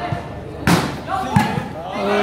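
A volleyball struck hard by hand twice during a rally, two sharp smacks about two-thirds of a second apart, the first the louder, over the chatter of a large crowd.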